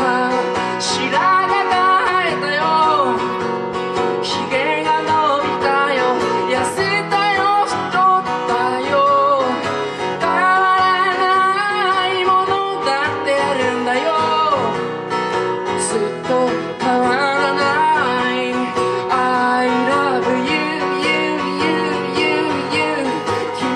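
A man singing a song live, accompanying himself by strumming an acoustic guitar.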